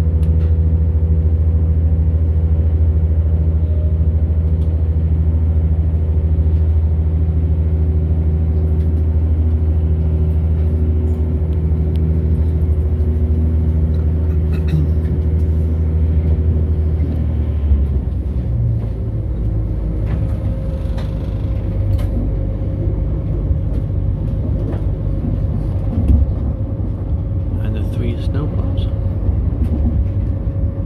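Diesel multiple-unit train heard from inside the carriage: the underfloor engine gives a steady low drone that changes note about 18 seconds in. After that the wheels rumble over the track, with a few knocks.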